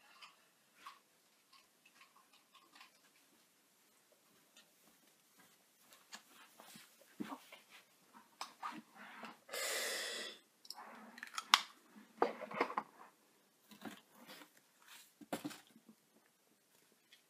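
Asthma inhaler used once: a short hiss as it is fired and breathed in, about ten seconds in, followed by a sharp click. Small clicks and rustles of handling come before and after.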